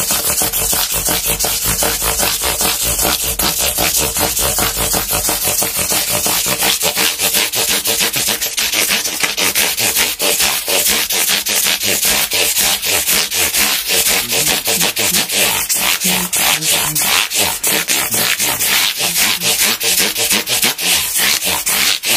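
Abrasive block rubbed quickly back and forth along the frets of a Squier Stratocaster neck, a steady rasping rhythm of about four strokes a second, as the new frets are dressed.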